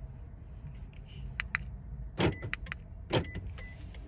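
Keys on a keyring being handled inside a car's cabin: scattered sharp clicks and jingles over a low steady hum, with two louder clunks about a second apart in the second half.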